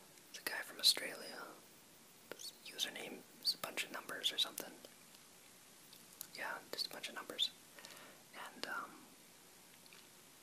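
A person whispering in short phrases with brief pauses between them.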